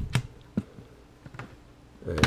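A sharp click as an RTL-SDR USB dongle is pushed home into a Raspberry Pi's USB port, then two fainter clicks about half a second and a second and a half in.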